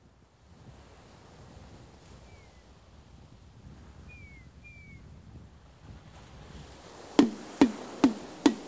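A recorded nature-sound intro: a steady low rushing wash with three short, falling bird chirps in the middle. Near the end, three sharp drum hits with a low ringing pitch that bends downward.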